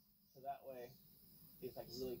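Faint, quiet speech in two short snatches, about half a second in and near the end, over a faint steady high-pitched whine.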